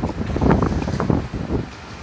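Wind buffeting a clip-on lapel microphone as uneven low rumbling, which dies down about one and a half seconds in.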